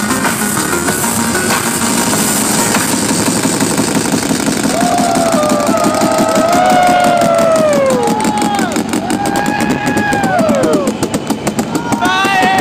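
Live electronic music: dense, noisy synthesizer texture. From about five seconds in, synthesizer tones bend and glide, rising and then falling in pitch, over a fast stuttering pulse. Near the end the sound chops rapidly on and off.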